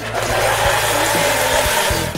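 Countertop blender running, crushing ice with Fanta into a slush: a loud, steady whirring grind that dies away near the end.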